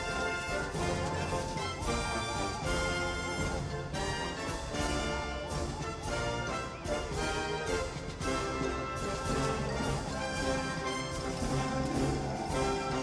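Marching band music: brass and woodwinds playing a bright tune over a steady drum beat.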